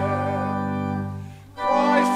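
Organ and congregation singing a hymn: a held chord at the end of a verse fades out about a second and a half in, and after a short breath the singing and organ start the next verse.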